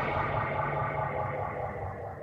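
A distorted, echoing electronic noise wash, the tail of a sound effect, fading out slowly and steadily.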